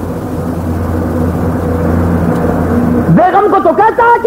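A low, steady mechanical drone with a few held pitches, growing slightly louder, that stops about three seconds in as the man's voice resumes.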